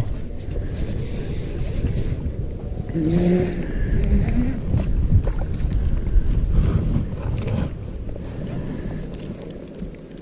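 Wind buffeting the microphone, a steady gusty low rumble, with a short vocal sound about three seconds in.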